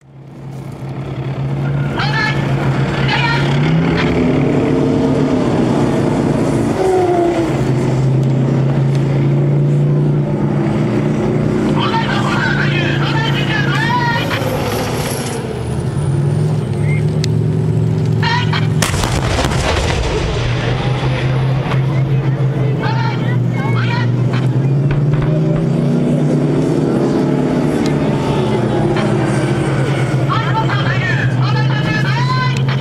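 Type 90 tank's Mitsubishi V10 diesel engine running as the tank drives, a steady drone that rises in pitch several times as it revs. There is a single sharp bang about two-thirds of the way through.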